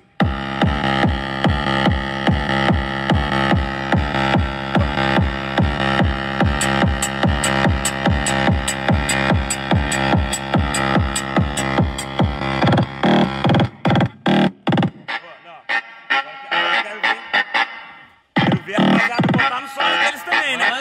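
Electronic music with a heavy bass beat, about three beats a second, played loud on a car sound system built into a Fiat Uno's trunk. About two-thirds of the way through, the bass drops out, leaving sparse stabs and a brief pause. The beat comes back near the end.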